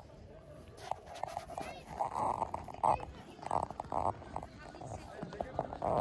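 People talking, with a vocal "uh-huh" at the very end, over short regular ticks of footsteps on a packed-snow path.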